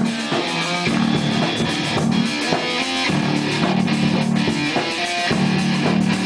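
A heavy rock band playing an instrumental riff on distorted electric guitar and bass guitar, repeated in phrases about a second long, with drums underneath.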